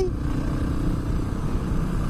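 Honda XR650R's single-cylinder four-stroke engine running steadily at cruising speed on the road, mixed with wind rush on the microphone.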